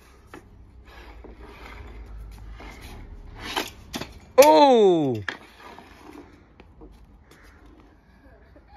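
Hockey stick scraping on synthetic ice tiles, then the sharp slap of a wrist shot on a puck about three and a half seconds in. It is followed at once by a loud drawn-out "oh" exclamation that falls in pitch.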